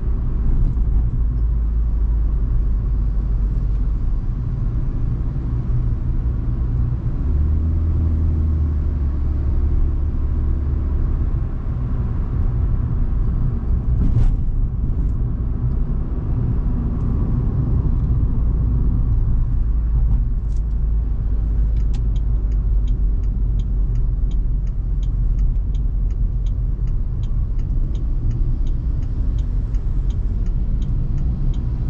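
Inside the cabin of a 2022 Proton Iriz with a 1.6-litre petrol engine and CVT on the move: steady low road and engine rumble. In the last several seconds a turn-signal indicator ticks about twice a second.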